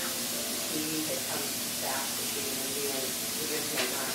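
Faint, indistinct voices over a steady hiss, with a short click near the end.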